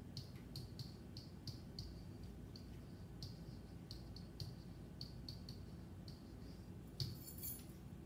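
Pen tip tapping and sliding on an interactive whiteboard as a phrase is handwritten: a run of faint short ticks, two or three a second, with a brief louder rustle near the end.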